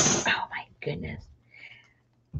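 Soft, whispered or murmured speech in the first second or so, trailing off into quiet.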